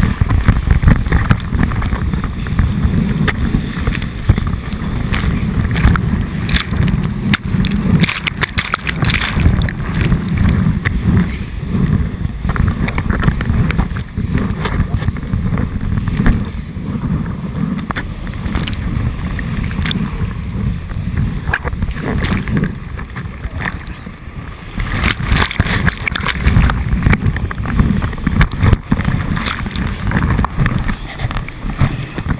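Whitewater of a river standing wave rushing and splashing right against a GoPro at water level: a loud, dense, rumbling wash with frequent splash hits, easing slightly about two-thirds of the way through before building again.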